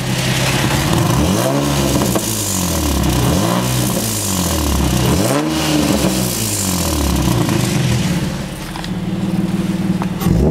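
Car engine fitted with an aftermarket eBay exhaust Y-pipe, idling steadily and then revved about four times, each rev rising and falling back toward idle.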